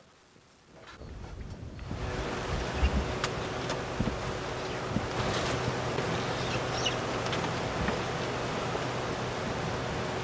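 Steady wind noise rushing on the microphone, fading in over the first two seconds, with a faint low steady hum underneath.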